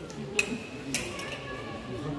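Murmur of voices around the ring, cut by two sharp clacks about half a second apart, each with a short ringing after it.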